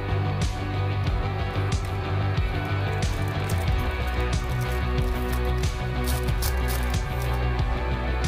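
Background guitar music plays steadily. Through the middle there is a run of sharp crinkling from a foil trading-card pack being torn open by hand.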